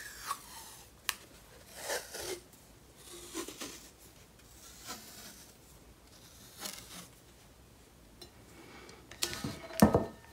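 Washi tape being peeled off its roll and rubbed down onto a paper-wrapped tumbler: a few short rustles and scrapes, with the loudest burst near the end.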